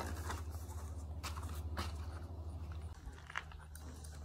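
Quiet outdoor background: a steady low hum with a few faint short clicks and rustles.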